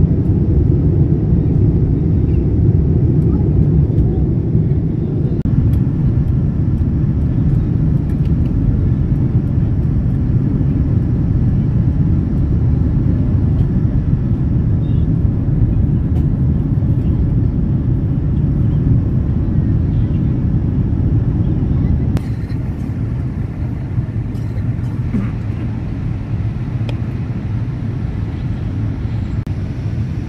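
Airliner cabin noise in flight: the steady low roar of the jet engines and airflow heard inside the cabin at a window seat. The level steps down slightly twice, where the recording cuts between clips.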